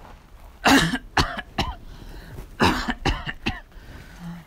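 A woman coughing in two fits: a loud cough a little under a second in followed by two shorter ones, then another run of three or four coughs about a second later.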